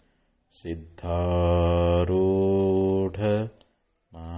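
A man chanting a devotional invocation in long, held notes on a steady pitch. There is a brief pause at the start and another near the end.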